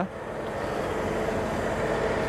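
Big, noisy trailer-mounted Cat diesel generator set running steadily: an even mechanical rush with a faint steady hum.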